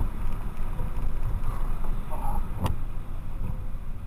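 Steady low rumble of a car's engine and tyres on a wet, slushy road, heard from inside the cabin. A single sharp click comes near the end.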